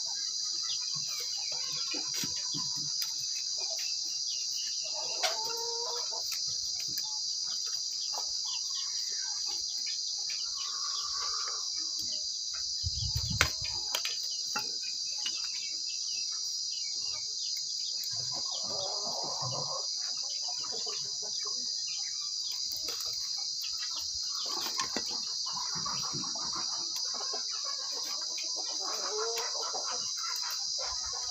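A steady, high insect drone, like crickets, with scattered small clicks and scrapes of a knife cutting and shaving bamboo. There is a dull low thump about thirteen seconds in.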